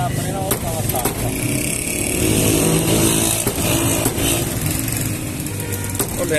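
A motor vehicle's engine passes close by, loudest from about two to three and a half seconds in and then fading. Two sharp cleaver chops on a wooden block come about half a second and a second in.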